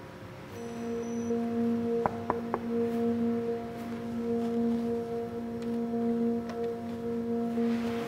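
Background score of a TV drama: a sustained drone of a few steady held tones that swell gently, like a ringing bowl, with three short sharp ticks about two seconds in.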